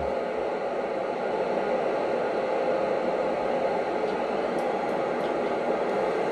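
Steady static hiss from an FM amateur radio receiver tuned to the ISS's 145.800 MHz slow-scan TV downlink on a narrow-band setting. The signal is weak, so the SSTV tones are buried in noise.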